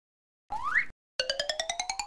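Cartoon-style sound effects: a short rising whistle-like swoop, then a rapid pulsing tone of about ten pulses a second that slowly climbs in pitch.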